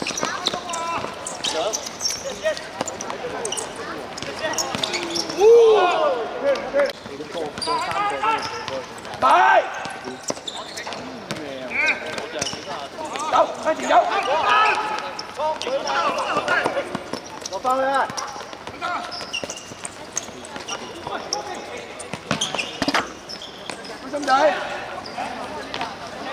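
Futsal game in play: players calling and shouting to one another in scattered bursts, with the short thuds of the ball being kicked and bouncing on the hard court.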